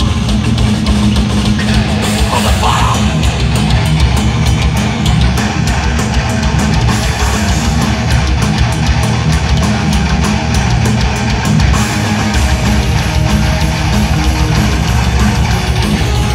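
Thrash metal band playing live at full volume, heard from the crowd: distorted electric guitars and bass over fast drumming with rapid cymbal and snare hits.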